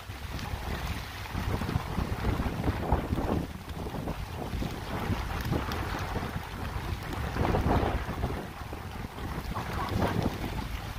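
Wind buffeting the microphone: a gusty low rumble that rises and falls, strongest a little before the end.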